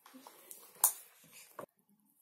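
Handling of a plastic toy playset: one sharp knock about a second in and a shorter tick just after, with faint rustling between.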